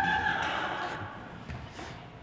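A metal-framed stacking chair scraping across the stage floor with a squeal that fades over about a second, then a couple of light knocks as its legs are set down.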